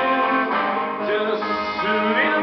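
Acoustic guitar strumming the chords of a rockabilly song.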